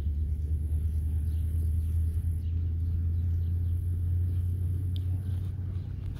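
A steady low rumble of wind buffeting the microphone.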